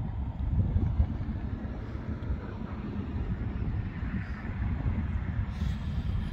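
Wind buffeting the camera microphone: a low, fluctuating rumble with no distinct events.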